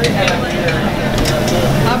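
Steaks sizzling on an open charcoal grill over a steady low rumble and background voices, with a few light clicks.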